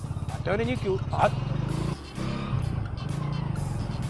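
Small motorcycle engine running as the bike rides up, with a short dip in the engine sound about halfway through.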